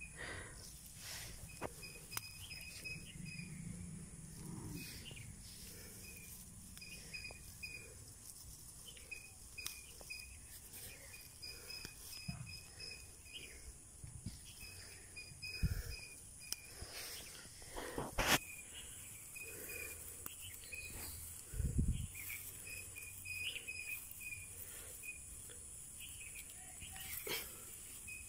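Outdoor insect ambience: a steady high drone with strings of short repeated chirps. Over it come rustles and a few sudden thumps from a hand handling grass and herb stems close to the microphone, the loudest about two-thirds of the way through.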